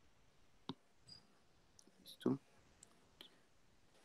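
A few faint, short clicks over quiet room tone, the loudest about two seconds in.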